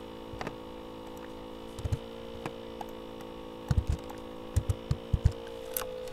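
Steady electrical hum with several pitches, broken by scattered short clicks and taps from computer keys and a mouse as the equation is edited. The taps come mostly in a cluster in the second half.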